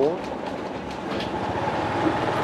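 Steady road and wind noise from riding along a street, with a few faint clicks and rattles.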